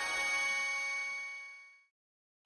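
A logo-sting chime: one bright metallic ringing tone with many steady overtones. It swells slightly, holds, then fades away to nothing near the end.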